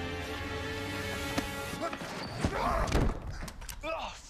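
Film soundtrack: held music tones stop about halfway through, followed by a short scuffle with heavy thuds of a body hitting the floor and a man's gasps.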